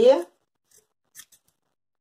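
Scissors trimming a fabric piece: a few short, faint snips about a second in.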